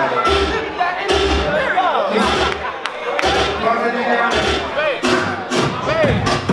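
Ballroom dance music from the DJ, with heavy bass hits, and a commentator's voice over it on the microphone.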